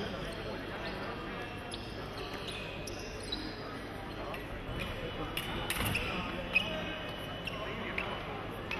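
Fencers' footwork on a metal piste: scattered thuds and knocks with brief high rubber-sole squeaks, over the steady hum of a large hall. One sharper knock comes about two-thirds of the way in.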